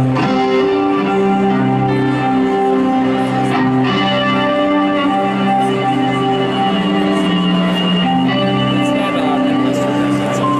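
Live rock band playing electric guitars in slow, sustained chords, the notes shifting every second or so.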